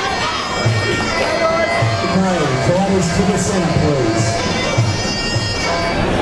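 Traditional Muay Thai ring music (sarama): a Thai oboe (pi) plays a nasal, sliding melody over drum beats.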